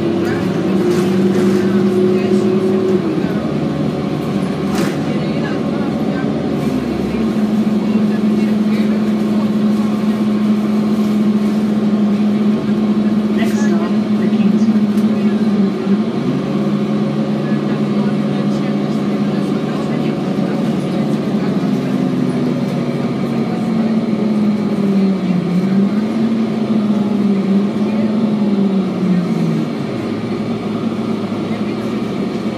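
Cabin sound of a 2007 Orion VII diesel transit bus under way: a steady engine drone that steps in pitch several times as the bus changes speed and the transmission shifts, and wavers up and down near the end.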